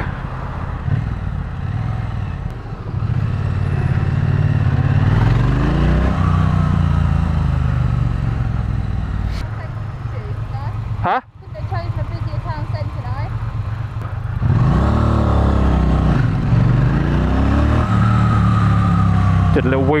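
Triumph Bonneville T100's 900 cc parallel-twin engine heard from the rider's seat on the move, rising in pitch as it pulls through acceleration twice. There is a sudden brief dropout about eleven seconds in.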